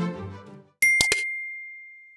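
Music fades out, then a sharp bell-like ding sound effect rings on as one high steady tone for about a second and a half. Two quick clicks come just after it starts.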